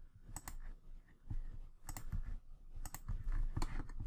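Irregular clicks of a computer mouse and keyboard, about ten in all, over a faint low hum.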